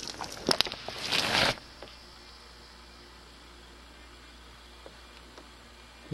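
Boiling water flung from a pot into air at 35 degrees below zero. A couple of clicks come first, then a short hiss about a second in that cuts off suddenly, as most of the water goes up as steam.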